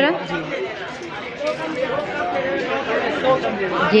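Speech only: people talking indistinctly, words not made out.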